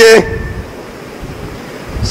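A man's drawn-out, sing-song preaching voice through microphones breaks off just after the start, followed by a steady low rumble and hiss of background noise from the sound system and room.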